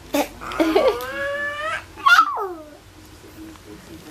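A toddler's drawn-out vocalizing: a long squeal that rises in pitch starting about half a second in, then a shorter cry that falls in pitch around the middle.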